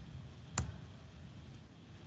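A single sharp computer click about half a second in, as a presentation slide is advanced, over faint steady hiss.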